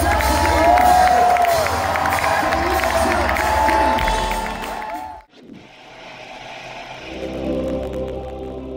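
Live hip-hop band playing, with the crowd cheering and whooping over it; about five seconds in it cuts off abruptly, and a quieter, different piece of music with choir-like voices fades up in its place.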